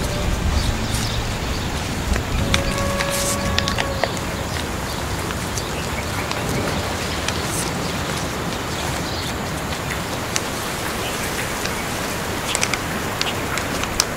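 Steady hiss of rain with scattered small ticks, and a short held tone about two and a half seconds in.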